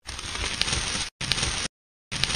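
Scraping, crackling sound effect of a scalpel scraping ticks off skin, in two strokes, the first about a second long and the second shorter, each starting and stopping abruptly.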